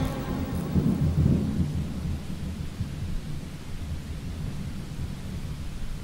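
Thunder sound effect: a low rolling rumble with a hiss like rain, dying away slowly.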